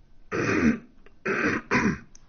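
A man clearing his throat and coughing: three short rough bursts, the first the longest.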